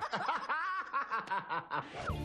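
Several people laughing and chuckling at once, in short overlapping bursts.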